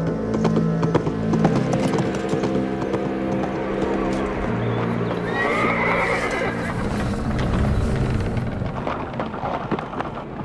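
A horse's hooves clip-clopping steadily, with a horse whinnying once about five seconds in, over background music.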